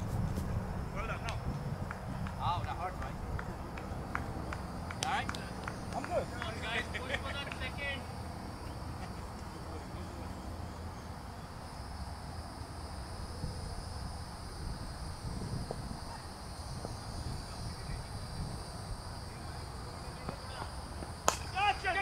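Outdoor cricket-field ambience: a steady low rumble of wind on the microphone, with faint distant shouts and calls from players in the first several seconds and a faint steady high-pitched hum from about halfway through.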